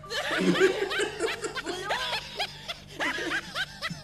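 Laughter: a quick run of short, repeated laughing bursts.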